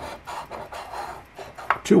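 A large coin scratching the latex coating off a paper scratch-off lottery ticket on a wooden table: a run of uneven rasping strokes.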